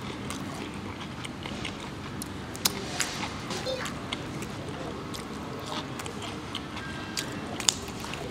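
Quiet eating sounds: a man chewing fried chicken and sucking his fingers, with a few small clicks, over a steady low background hum.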